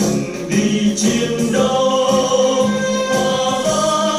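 Vietnamese soldiers' march song: a group of voices singing over instrumental backing, holding long notes in the second half.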